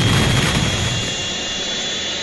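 A loud, sustained, engine-like roar that fades slowly.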